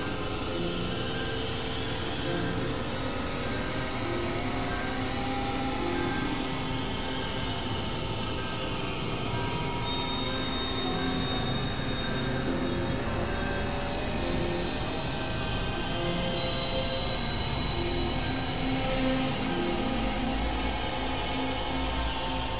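Experimental synthesizer drone and noise music: a dense, steady wash of noise with many held tones layered over it that step up and down in pitch, and a high thin tone coming in around the middle.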